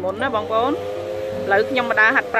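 Singing voice over background music, holding one long note from about half a second in.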